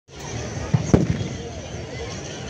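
A ragged volley of black-powder musket shots from a tbourida charge: a few sharp bangs within about half a second, the loudest about a second in, over a crowd's noise.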